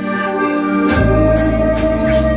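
Live folk-style band music led by a piano accordion's sustained reedy chords, with violin; a deep bass note comes in about a second in, over a steady beat of light percussive hits about twice a second.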